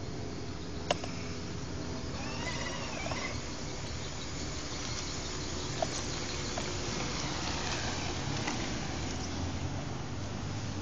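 Steady outdoor background hum with no clear single source, broken by two sharp clicks, one about a second in and one about six seconds in.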